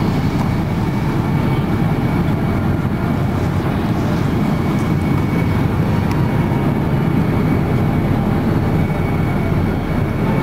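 Airliner cabin noise in flight: the steady low rush of the engines and the airflow over the fuselage, heard inside the cabin.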